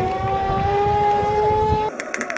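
A long drawn-out celebratory shout at a goal, one held yell slowly rising in pitch that cuts off just before the end, over wind rumbling on the microphone.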